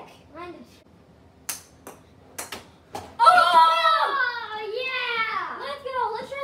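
A boy laughs briefly. Then come a handful of sharp knocks, from about a second and a half to three seconds in: plastic hockey sticks striking a ball. After that, a child's long excited yell rises and falls in pitch.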